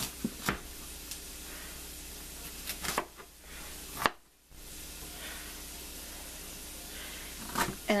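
Chef's knife cutting broccoli on a plastic cutting board, the blade knocking on the board a few times, over a steady hiss of onions frying in butter. The sound cuts out briefly about four seconds in.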